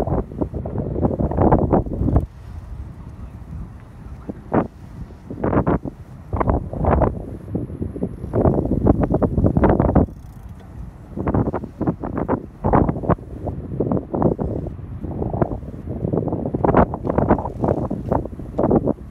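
Wind buffeting a phone's microphone in uneven gusts, a low rumbling rush that surges and drops every second or so.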